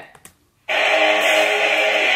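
Loud rock band music cuts in abruptly about two-thirds of a second in, with electric guitar chords held at a steady level.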